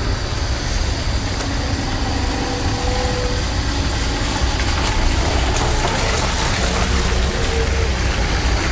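Bajaj Pulsar NS200 motorcycle's single-cylinder engine idling steadily.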